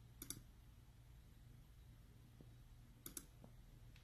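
Computer mouse button clicked twice, once just after the start and again about three seconds in, each click a quick pair of sharp ticks, over a faint steady low hum.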